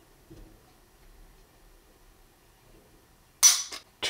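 A stainless-steel 1911 Commander dry-fired against a digital trigger pull gauge: quiet handling while the trigger is pulled, then the hammer falls with one sharp metallic snap near the end, followed by a fainter click.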